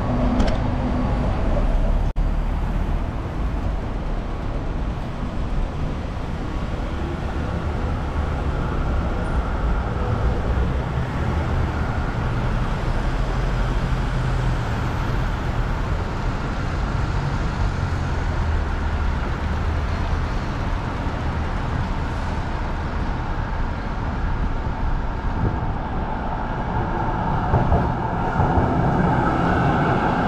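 Steady city street traffic noise: road vehicles running past with a continuous low rumble.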